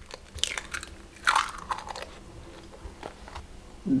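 Fresh eggshell cracking and crunching as an egg is broken open by hand over a glass bowl of flour. There are a few short, sharp cracks, the loudest about a second in.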